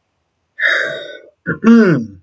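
A man clearing his throat: first a breathy rasp, then a short voiced 'ahem' that falls in pitch.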